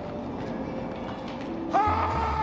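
Film soundtrack of a subway station: the steady rumble and rail noise of a train. A held high-pitched tone comes in near the end.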